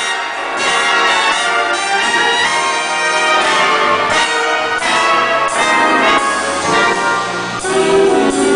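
Big band's brass and saxophone section playing an instrumental intro: trumpets, trombones and saxophones in a series of changing chords.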